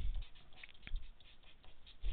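Felt-tip marker writing on paper: faint, intermittent scratchy strokes, with a small tick a little before a second in.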